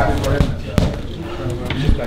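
Boxing gloves landing punches on a heavy bag: three heavy thuds, about half a second apart and then a pause before the third near the end.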